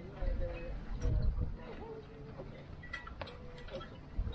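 Indistinct speech from a late-night TV talk show, with low gusts of wind buffeting the microphone near the start and about a second in, and a few sharp clicks.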